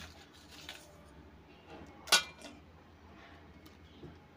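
Ice cubes dropped into a steel bowl of litchi pulp: a few faint knocks, then one sharp clink about two seconds in.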